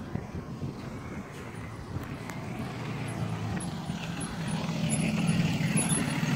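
A school bus engine approaching, its low steady drone growing louder through the second half as the bus pulls up.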